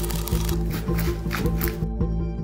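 Kitchen knife cutting into a raw red onion, several short crisp crunches as the blade bores a hole in its top, over steady background music.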